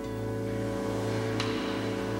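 Background music with sustained, held chords.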